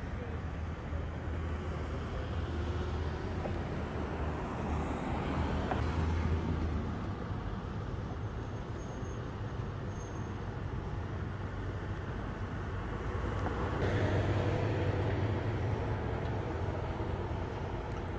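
Street traffic with a steady low vehicle engine rumble, growing louder for a few seconds near the end.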